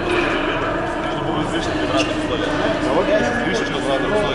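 Indistinct chatter of several men talking over one another in a large, echoing hall.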